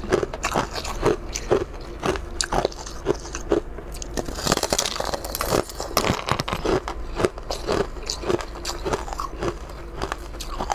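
Close-up crunchy bites and chewing of a clear, brittle, glassy sheet of food, about two crunches a second, with a longer crackling break about halfway through.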